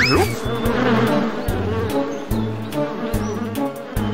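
Cartoon sound effect of a swarm of bees buzzing over background music, opening with a quick rising glide in pitch.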